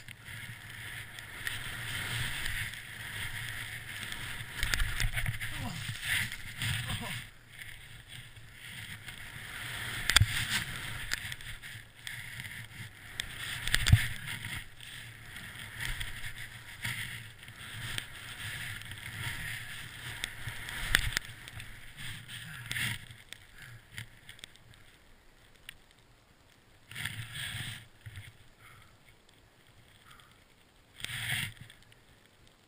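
Skis hissing through deep powder snow in swelling surges, with a few sharp knocks, the loudest about fourteen seconds in.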